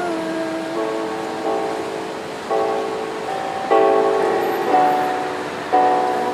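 Yamaha electronic keyboard playing held chords, a new chord struck about every second. A woman's sung note is held over the first chord and fades within the first second.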